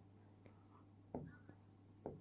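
Faint scratching of a marker pen writing on a whiteboard, with one brief soft sound about a second in.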